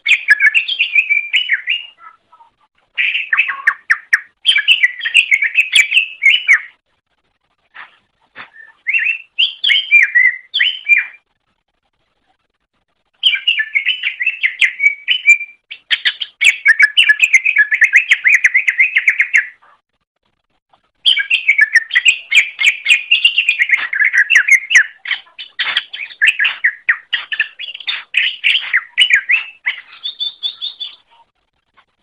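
Green leafbird (cucak ijo) singing loudly: phrases of a few seconds of rapid, varied chattering and whistled notes, broken by short pauses of one to two seconds.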